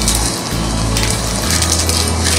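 Polypropylene grow bag crinkling and granular mushroom substrate crunching as gloved hands press it down to compact a fruiting bag, over steady background music.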